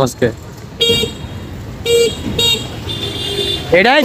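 Vehicle horns honking in street traffic: short toots about one, two and two and a half seconds in, then a fainter, longer one.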